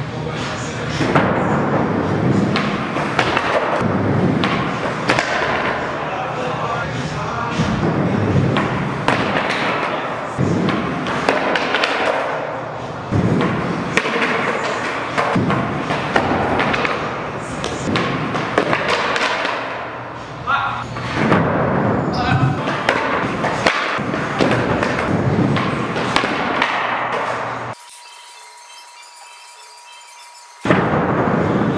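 Music with vocals playing over skateboard sounds: wheels rolling on the floor and the board slamming down on landings. Near the end everything drops out suddenly to a faint steady tone.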